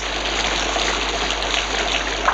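Steady rain falling on foliage, an even hiss.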